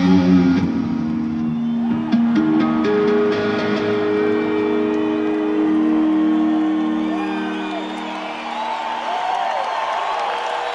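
Unaccompanied electric guitar solo played live through amplifier stacks: a quick run of notes, then long sustained held notes that slowly die away. Crowd whistles and cheers come up near the end.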